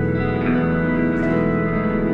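Live instrumental band music: sustained, effects-laden electric guitar tones held over bass, steady and dense without sharp drum hits.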